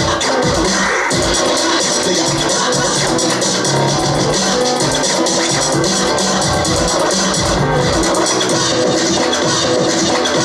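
Loud dance music with a steady beat, playing without a break for a dance routine.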